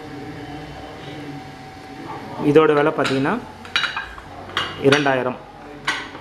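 Light metallic clinks and knocks of an aluminium candle mould being handled, several of them in the second half, over a steady low hum. A voice is heard in the background alongside the clinks.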